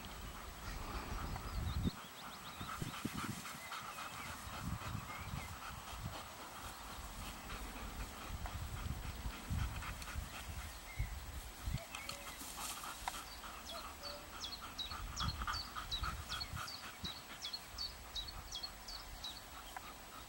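Dogs panting and whining softly as they sniff and circle each other.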